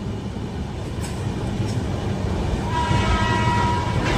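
Steady rumble of a moving passenger train heard from on board. A train horn sounds with a steady multi-tone note for the last second or so.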